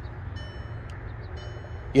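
A 2022 VW Passat's warning chime dinging faintly twice, about a second apart, each ding a brief high tone, because the ignition is on. Under it is a steady low rumble.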